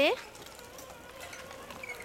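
A faint, steady buzzing hum holding one pitch, after a voice breaks off at the very start.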